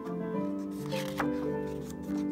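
Background music with held melodic notes, and the rustle of a photobook page being turned by hand about a second in.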